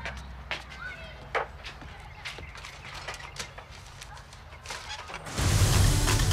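Quiet outdoor street ambience with a low steady hum, scattered light knocks and a few short chirps, then loud music with a heavy low end starting suddenly about five seconds in.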